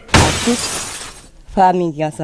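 A sudden rush of noise that starts sharply and fades out over about a second, between a man's words.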